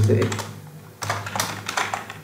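Computer keyboard keystrokes: a quick run of key clicks in the second half, as HTML is typed and copy-pasted in a code editor.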